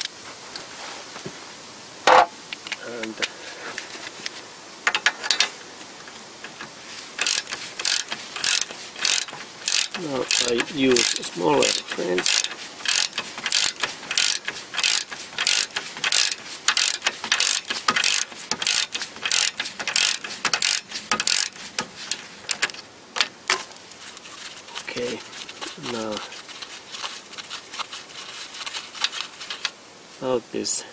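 Socket ratchet wrench clicking as it runs a nut off a Toyota Corolla's front ball-joint stud. After a few single clicks, a steady run of clicks about two a second follows for some fifteen seconds, then tapers off.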